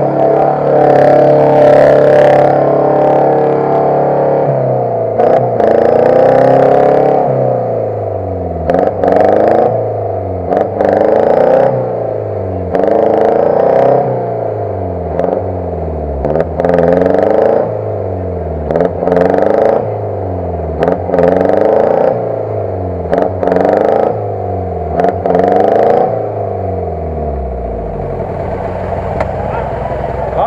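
UAZ-469 engine held at high revs, then revved hard and let drop again and again, about every second and a half, as the driver works the throttle with the 4x4 stuck in deep swamp mud. The engine settles to a lower, steadier note near the end.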